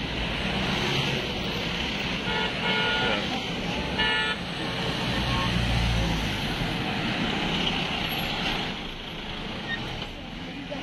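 A convoy of police jeeps and SUVs driving past, with steady engine and tyre noise. Vehicle horns sound in short blasts, two about two to three seconds in and one about four seconds in.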